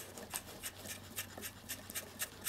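Faint scratchy ticks, about three a second, as a steel M5 bolt is turned by hand into a freshly tapped thread in acrylic, its threads rubbing against the cut plastic thread.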